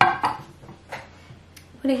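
A metal spoon clinking against a ceramic soup bowl: one sharp ringing clink that fades over about half a second, then a lighter tap about a second later.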